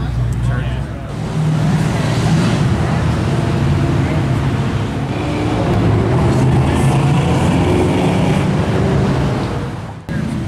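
Ford GT's supercharged V8 running steadily at low revs, with no hard revving or acceleration.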